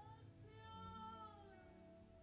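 A woman singing one long high note that rises and then falls, faintly, over soft held lower tones of the accompaniment.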